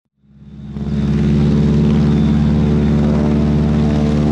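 Propeller airplane engine sound effect, fading in over about a second and then running at a steady pitch.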